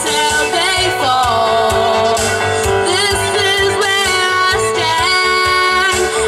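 A girl singing solo into a microphone over an instrumental backing track, holding long, wavering notes above a steady beat.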